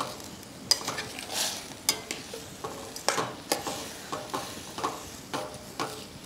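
A steel spoon stirring diced watermelon rind in a steel pan on the stove: irregular scrapes and clinks of metal on metal over a faint sizzle from the cooking.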